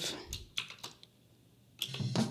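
A few sharp computer keyboard and mouse clicks in the first second, a Ctrl-Alt-click exclusive solo. Just before the end a soloed drum track, the second tom, starts playing back.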